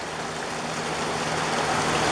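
Heavy rain pouring down, a steady hiss that grows slowly louder.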